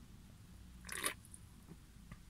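A person drinking from an aluminium can, with one short, faint mouth sound of sipping or swallowing about a second in, over a low steady hum.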